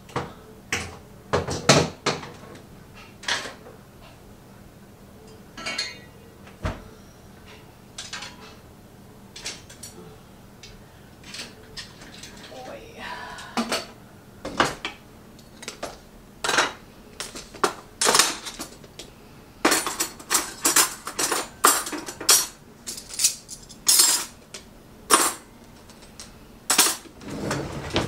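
Clean dishes and cutlery clinking and clattering as a dishwasher is unloaded and they are put away: irregular sharp clinks and knocks, sparse at first and coming in quick succession through the second half.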